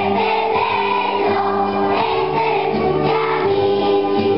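Large choir of primary-school children singing an Italian Christmas song together, continuous and steady.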